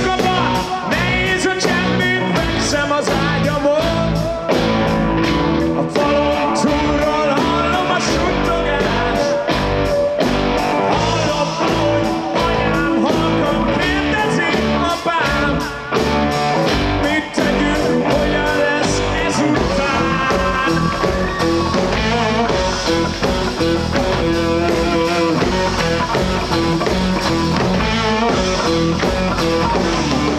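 Live rock band playing loud through the stage PA: distorted electric guitars over a steady drum beat, with a male lead singer singing.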